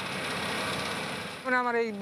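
Yanmar combine harvester running as it cuts rice, a steady mechanical noise that eases off after about a second and a half, when a man's voice comes in.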